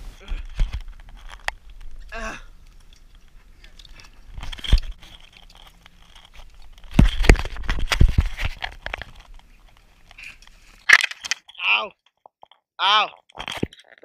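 Handheld camera knocks and rubs, with leaves and twigs crunching and rustling, as people clamber out of a pedal boat onto a brushy bank; the heaviest knocking comes about halfway through, and short bursts of voice or laughter cut in near the end.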